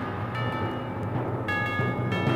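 Instrumental avant-garde jazz recording from a 1973 vinyl LP: two ringing chords struck, about a third of a second and a second and a half in, over a low sustained bass tone.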